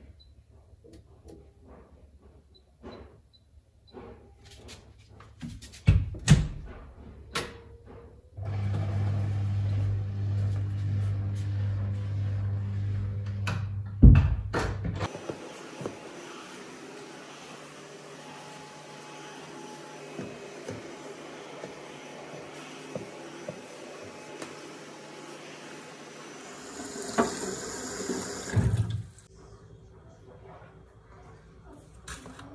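Scattered clicks and knocks, then a loud low hum for about six seconds, then water running steadily for about ten seconds, getting louder briefly near the end.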